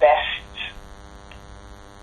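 Steady electrical hum on a telephone conference-call line, heard through a pause after a single spoken word near the start.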